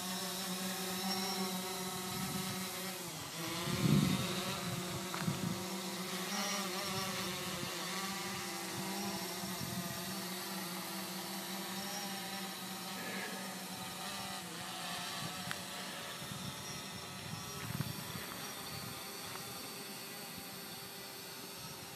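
DJI Phantom 4 quadcopter's propellers humming, with several steady pitches that waver and swell briefly about four seconds in, then slowly grow fainter as the drone climbs away.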